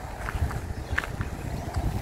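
Footsteps of a person walking on grass and dirt, with a low rumble and a few faint short ticks.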